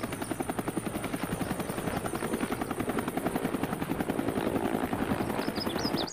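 Helicopter with a two-blade main rotor running on the ground, the rotor beating in a fast, steady rhythm.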